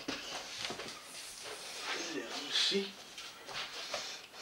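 A person's faint, indistinct voice, breathy and murmured, with a few short voiced bits in the middle.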